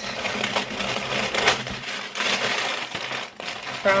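White packing wrapping being pulled out of a cardboard shipping box: continuous crinkling and rustling with small handling clicks.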